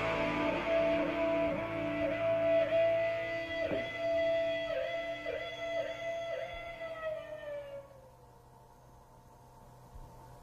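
Electric guitar holding a long sustained note that is repeatedly dipped in pitch and brought back, slowly fading until it dies away about eight seconds in.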